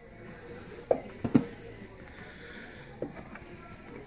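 Cardboard model kit boxes being handled and moved, with a few light knocks and rustles, the two sharpest a little after a second in.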